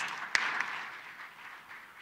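Audience applauding, fading away over about two seconds.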